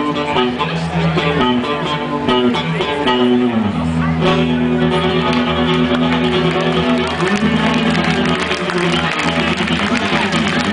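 Amplified electric guitar played live, with held, ringing chords. About three and a half seconds in the pitch slides down into a new sustained chord, and about seven seconds in another chord is struck and rings on.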